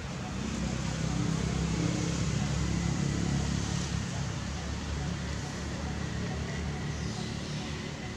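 Outdoor background with a low, steady rumble of motor traffic that swells during the first few seconds and then eases, under a faint thin high tone and indistinct voices.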